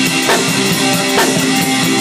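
Acoustic drum kit played in a steady rock beat, with strong strokes about twice a second and cymbals. Underneath runs a rock recording with guitar, which the drummer plays along to.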